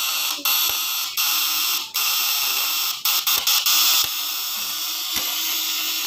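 Vibrating platinum contact points of a homemade fish-stunner inverter buzzing with a steady high-pitched rasp, breaking off briefly a few times in the first four seconds. Run at 36 volts with an extra capacitor fitted, the points sound smooth, which is taken as a sign of stable running.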